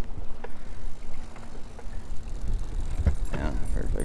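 Boat outboard motor running steadily at trolling speed, a low rumble with a faint steady hum.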